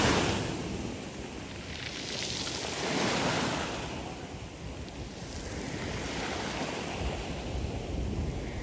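Small waves breaking and washing up a shallow shore, the surf swelling and easing a couple of times, with wind on the microphone.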